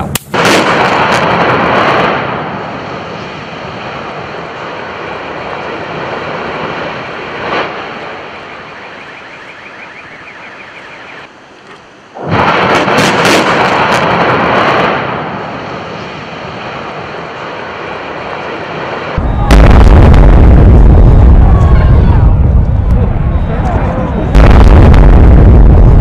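Demolition charges firing at the base of a concrete power-station cooling tower, and the tower collapsing. A sudden blast comes just after the start, another about 12 seconds in, and from about 19 seconds a very loud, deep rumble of falling concrete surges again near the end.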